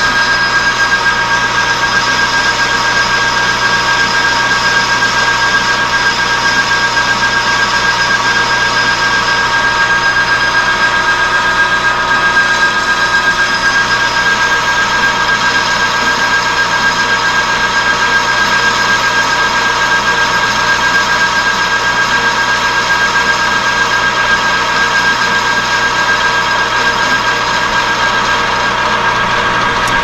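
Metal lathe running steadily while its tool takes a facing cut across a plate made from a scrap gear: an unchanging machine whine with several steady tones.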